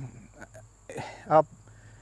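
Insects singing in a steady high-pitched drone, behind a man's short, halting bits of speech.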